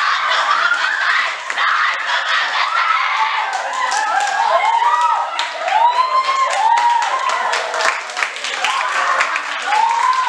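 A girl wailing and crying in acted grief, long rising-and-falling cries that grow strongest in the middle, over the chatter of a crowd of students and scattered claps.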